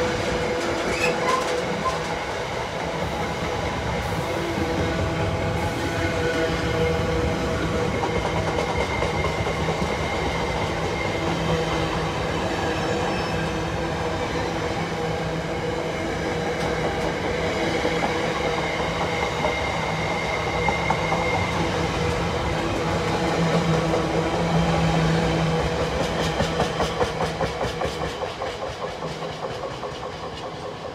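Container freight train's loaded flat wagons running past: a steady rumble of wheels on the rails with clickety-clack over the rail joints. Near the end the clatter becomes a regular beat and fades as the last wagons go by.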